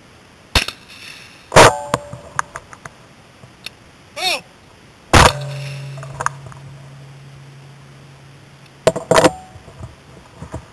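Two shotgun shots from a Browning Silver 12-gauge semi-automatic, about three and a half seconds apart, the second leaving a low hum that slowly fades. There are sharper metallic clanks before the first shot and again near the end.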